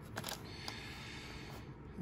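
Faint handling of a cardboard trading-card box and its packs: a few light clicks and taps in the first second, over quiet room tone.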